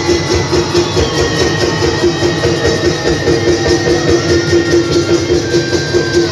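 Live Bihu dance music, with dhol drums beating a quick steady rhythm under a high melody line of long held notes.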